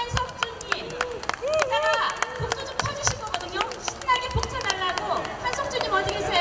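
Scattered hand clapping from a small audience, irregular claps throughout, with people's voices talking over it.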